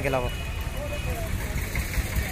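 Diesel tractor engine idling steadily, a low, evenly pulsing rumble.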